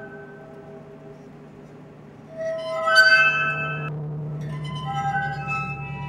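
Improvised music on an experimental instrument of long upright rods, giving glass-like ringing tones. A cluster of several tones swells up about two seconds in and rings for over a second, then more overlapping ringing tones follow over a low steady hum.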